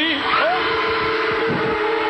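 A man's long held shout over crowd noise, from an old television stage stunt in which a man drops into a water tank.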